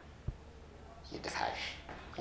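Quiet whispered speech starting about a second in, after a single soft low thump near the start.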